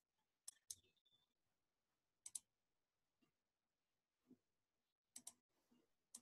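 Computer mouse clicking a few times, mostly in quick pairs, against near silence.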